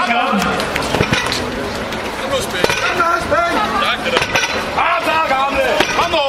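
Men's voices calling out encouragement over crowd chatter, with a few sharp knocks.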